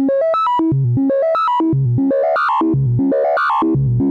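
Doepfer A111-1 analog VCO playing a fast, stepped note sequence that rises from low to high and repeats about once a second. Its tone grows denser and more clangorous as audio-rate exponential FM from a second oscillator is brought in.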